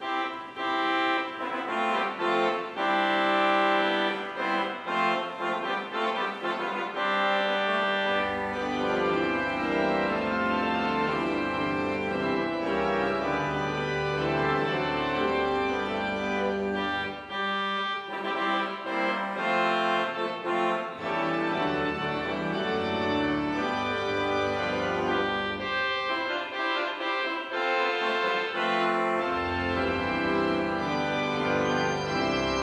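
Church organ playing the opening of a hymn in sustained chords, with deep bass pedal notes joining about eight seconds in.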